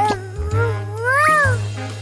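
A high, whiny cartoon-character cry that rises and falls in pitch like a meow, over background music with a pulsing bass.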